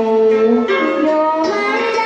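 A woman singing a Vietnamese song into a microphone over instrumental backing, with long held notes that slide into new pitches about two-thirds of a second in and again past the middle.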